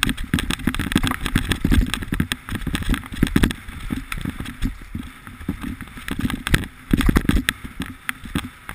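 Mountain bike ridden fast down a rough dirt trail: a continuous, irregular clatter of knocks and rattles as the bike bounces over the bumps, over a low rumble of wind rushing on the microphone.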